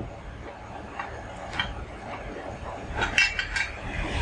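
Light clicks and clinks of the sprayer's spray lance and plastic nozzle parts being handled: a couple of single clicks, then a quick cluster of brighter, slightly ringing clinks near the end.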